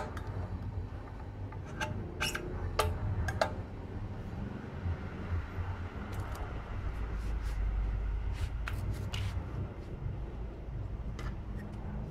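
Small metal scooter CVT parts being handled on a cardboard-covered floor: scattered light clicks and knocks as parts are picked up and set down, with some cloth rubbing, over a steady low hum.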